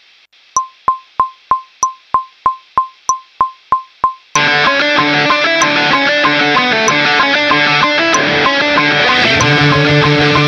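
Recording metronome count-in: evenly spaced clicks about three a second, every fourth one accented. About four seconds in, the pop punk backing track comes in, with a distorted electric guitar rhythm part played through a Boss Katana 100 MkII amp recorded over USB.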